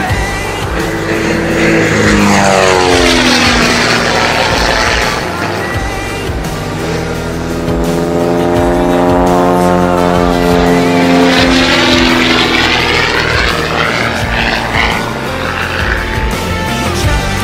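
Pitts S-2B aerobatic biplane's propeller and engine running hard through a display pass, its tone sweeping down about two seconds in, holding steady, then sweeping back up near the end.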